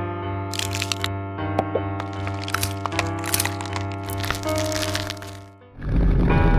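Plastic model-kit parts snapping together in quick clusters of sharp clicks, over background music that dips away near the end.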